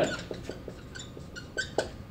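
Quiet classroom room tone with a scattering of faint small clicks and a few brief high squeaks.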